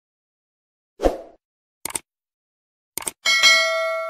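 Subscribe-button animation sound effects: a short thump about a second in, then two pairs of quick clicks. Near the end comes a bright bell-like notification ding that rings on and fades.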